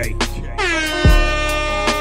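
DJ air-horn sound effect over a hip hop beat. The horn chord starts about half a second in, dips slightly in pitch and holds until near the end. A deep falling bass boom drops in about a second in.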